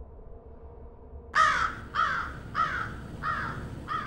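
A bird calling in a series of repeated calls, a little under two a second, each falling in pitch. The calls start about a second in and fade as they go on.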